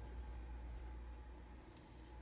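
Quiet kitchen room tone with a steady low hum. Near the end comes a short, faint hiss, as kelp powder is sprinkled over frozen raw dog food.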